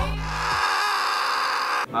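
A steady, high, whining comedy sound effect that holds for about a second and a half and cuts off suddenly shortly before the end. The low background music drops out as it starts.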